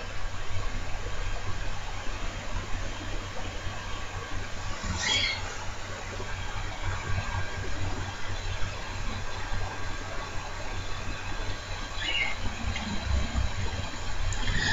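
A spoon stirring a soft, wet mashed-potato and egg dough in a glass bowl: quiet, continuous squelching and scraping, with two brief higher-pitched sounds about five and twelve seconds in.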